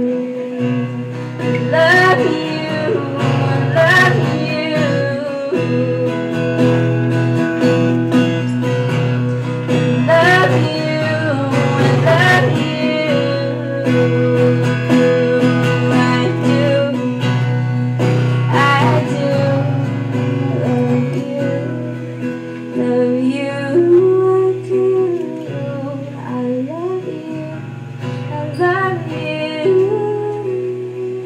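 A woman singing a slow song live over acoustic guitar. Her vocal phrases come and go every few seconds over a steady guitar accompaniment.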